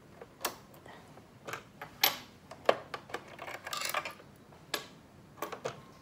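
Scattered small clicks and taps of a screwdriver and metal presser-foot holder as the presser-foot attachment is unscrewed and taken off a Juki sewing machine, with a brief scraping rustle a little past the middle.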